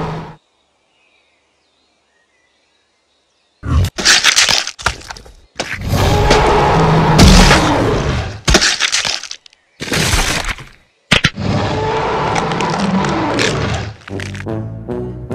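Dubbed dinosaur-fight sound effects: after about three seconds of silence, a burst of sharp cracks, then several loud bursts of crunching, breaking noise mixed with low growls.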